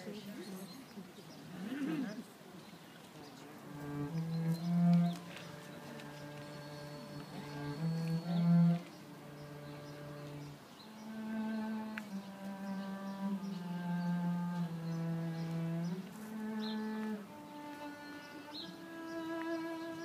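Instrumental introduction played on cello and electronic keyboard: slow, held notes one after another, beginning about four seconds in.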